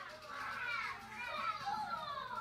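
A cat meowing, several drawn-out high-pitched meows that fall in pitch and overlap one another.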